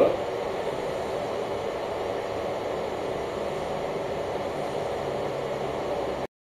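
Steady, even background noise with no distinct clicks, knocks or other events.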